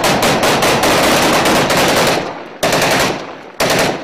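Automatic rifle fire: a long rapid burst of about seven or eight shots a second that stops about two seconds in, followed by two shorter bursts.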